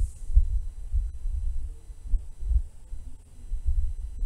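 A low, irregular throbbing rumble, pulsing a few times a second, with almost nothing higher-pitched above it.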